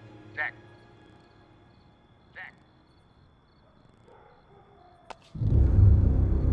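Film soundtrack: a man's voice gives a short call about half a second in and a fainter one about two seconds later over a faint low hum. A sharp click comes about five seconds in, then a loud, deep, sustained music swell begins just before the end.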